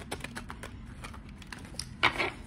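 Deck of oracle cards being shuffled overhand by hand: a quick, irregular run of soft card-on-card clicks and slaps.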